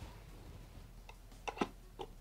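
Light handling of a small wooden crate and its cardboard insert: a few faint taps and clicks, the clearest two close together about one and a half seconds in.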